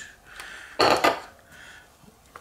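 Metal aerosol spray can set down on a granite countertop: a single short clatter about a second in, after some faint handling noise.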